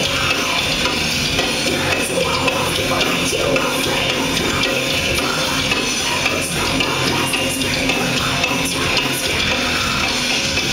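Thrash metal band playing live: distorted electric guitar, bass and drums going at full volume without a break, heard from in the crowd.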